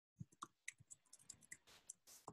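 Faint keystrokes on a computer keyboard: about a dozen quick, uneven clicks as a line of code is typed.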